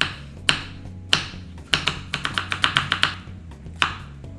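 Chef's knife chopping an onion on a wooden cutting board: two separate chops, then a quick run of about ten chops, and one more near the end. Background music plays underneath.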